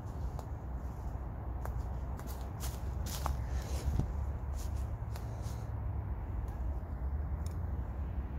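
Footsteps through dry leaf litter, twigs and loose chalk stones: a scatter of crackles and snaps in the first half, thinning out after about five and a half seconds. A steady low rumble runs underneath.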